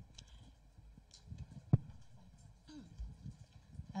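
Handheld microphone being handled and passed to a reporter: scattered soft knocks and clicks over quiet room tone, with one sharper click a little before halfway.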